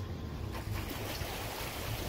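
Water streaming and splashing off an empty pontoon boat trailer as it is pulled up out of the water, over the steady low running of the pickup's 3.0-litre six-cylinder engine.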